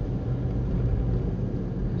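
Steady low rumble of a car on the move, engine and road noise heard from inside the cabin.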